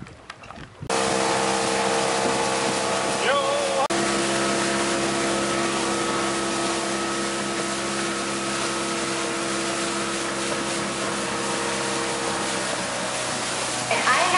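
A small fishing boat's engine running at a steady cruising speed under way, with wind and water rushing past. It starts abruptly about a second in and holds one even pitch throughout.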